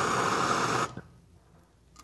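Hand-held gas torch blowing a steady hissing flame, cut off suddenly about a second in, followed by a faint tap and near quiet.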